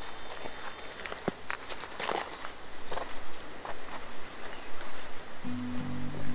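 Footsteps and rustling as a person walks over garden soil and grass, irregular and uneven, over background music whose low bass notes come in near the end.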